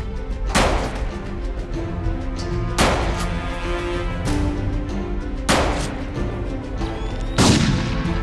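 Five pistol shots, spaced one to two seconds apart, each with a short echoing tail, over background music; the last shot is the loudest.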